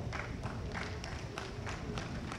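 A pause in a man's speech: faint outdoor background noise with a few soft, irregular clicks.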